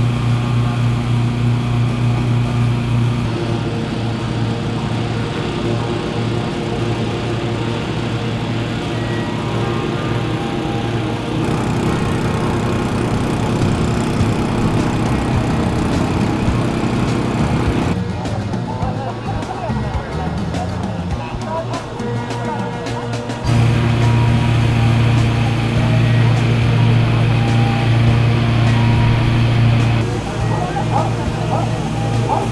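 Petrol-engined balloon inflator fans running steadily, a loud low hum, while hot-air balloon envelopes are cold-inflated, with voices in the background. The sound changes abruptly several times.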